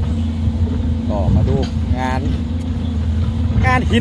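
SANY SY205C hydraulic excavator's diesel engine running steadily at working speed as the machine digs.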